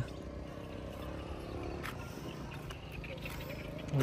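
Honda Gyro Up's 50cc two-stroke single-cylinder engine idling steadily.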